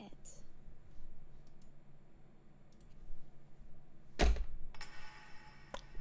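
Quiet room tone with a few faint ticks, a sharp click about four seconds in and a smaller click shortly before the end.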